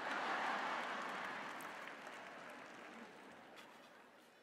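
Studio audience clapping and laughing: the sound swells at the start and then fades away over about three seconds.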